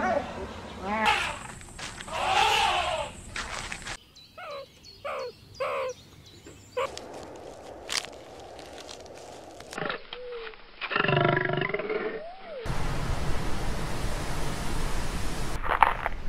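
A string of separate wild animal calls cut together. It opens with the high, pitched chirping calls of cheetahs, followed by four short calls about four to seven seconds in, then a longer call that rises and falls near the middle. A loud, low, rough noise fills the last few seconds.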